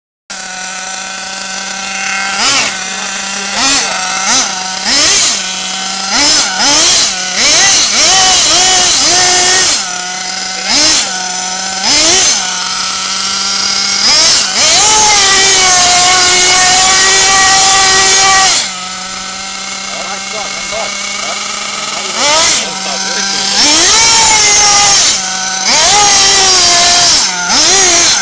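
Glow-fuelled nitro engine of an RC buggy idling between throttle blips. It revs up and down in short bursts, holds one long high-revving run for a few seconds in the middle, then revs again near the end.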